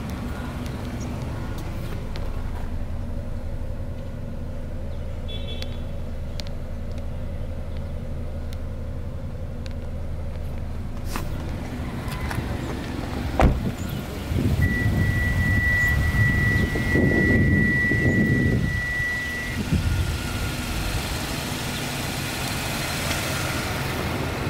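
Hyundai Veloster 1.6 GDI four-cylinder engine idling steadily. A single thump comes a little past halfway, followed by handling noise and a steady high beep lasting about five seconds.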